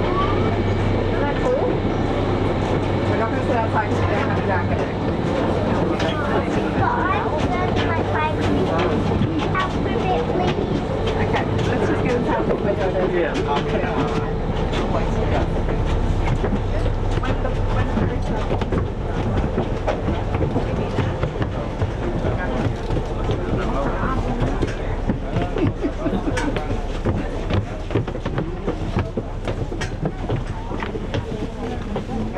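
A crowd of passengers walking and chatting as they board a ferry, with many footfalls on the deck and stairs. Underneath is the steady low hum of the moored ferry's engines.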